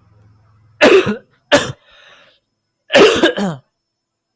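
A person coughing three times, loudly, the last cough the longest.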